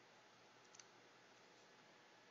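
Near silence: faint room hiss with a couple of small, sharp clicks close together about three-quarters of a second in.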